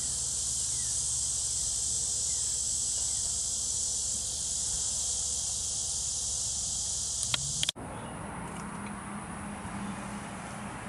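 A steady, high insect chorus outdoors. Near the end, after a couple of sharp clicks, it cuts off abruptly and gives way to a quieter, low steady hum.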